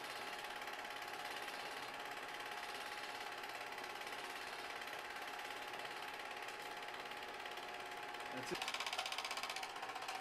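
Film projector running: a steady, quiet mechanical whir with a fast tick, turning louder and busier for about a second near the end.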